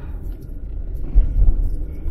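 Low, steady rumble of a car heard from inside its cabin, with a louder low thump about a second in.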